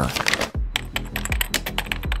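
Computer keyboard typing sound effect: a quick, uneven run of key clicks, several a second, over soft background music. It starts with a low thud about half a second in.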